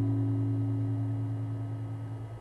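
Final guitar chord of the song ringing out and slowly fading away.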